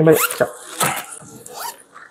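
Hands rummaging through a fabric pencil pouch, with scattered rustles and small clicks of the items inside. A short rising voice sound comes right at the start.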